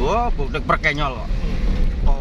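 Steady low rumble of a car, heard from inside its cabin, with a man's voice talking over it in the first second.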